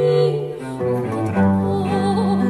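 Baroque chamber ensemble accompanying an 18th-century Dutch song: bowed strings hold low bass notes under higher melodic lines. About halfway through, the bass steps up to a new sustained note.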